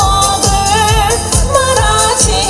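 A woman singing into a microphone over amplified musical accompaniment with a steady drum beat, holding notes with vibrato.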